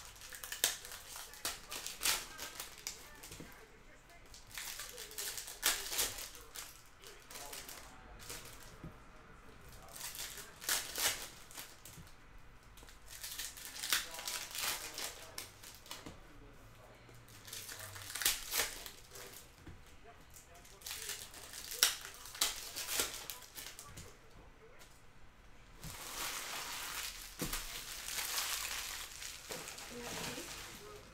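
Foil trading-card pack wrappers crinkling and tearing as packs are opened, with cards rustling against each other in the hands. The rustle comes in short bursts every second or two, with a longer stretch near the end.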